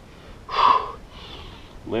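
A man's forceful breath out, about half a second long, followed by a softer breath. It comes with the effort of swinging a leg from downward dog forward into a lunge.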